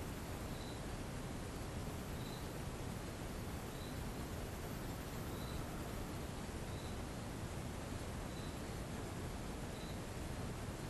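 Steady hiss of background room noise, with a faint, short, high chirp repeating about every one and a half seconds.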